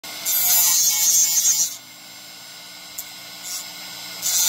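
Motor-driven grinding wheel of a carbide blade sharpener, with the carbide teeth of a Diablo oscillating multi-tool blade pressed into it: a loud, high grinding hiss for about a second and a half, then the motor runs on alone with a steady, quieter hum and a faint click.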